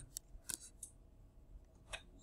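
Faint sharp clicks and taps of a stylus on a tablet screen during handwriting: a few separate ticks, the loudest about half a second in and another near the end.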